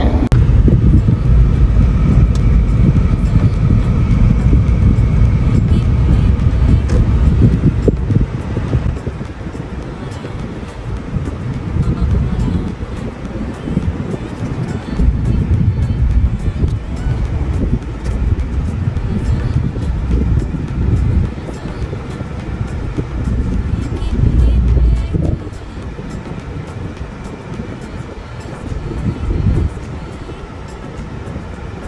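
A car on the road heard from inside the cabin: a heavy low rumble of road and wind noise, loudest for the first eight seconds and then easing, with music playing over it.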